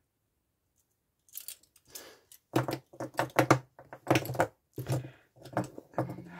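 Pens being handled and set down on a table, a run of short clicks and clatters. The sounds begin after about a second of silence.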